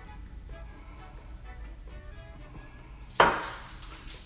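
Soft background music, then about three seconds in a single sharp knock that dies away quickly, as the jar is set down on the foil-covered table.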